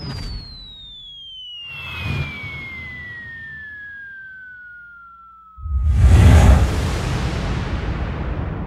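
Title-sequence sound effects: a falling-bomb whistle that drops steadily in pitch for about five seconds, with two quick whooshes over it, then ends in a sudden deep explosion boom with a long rumbling tail.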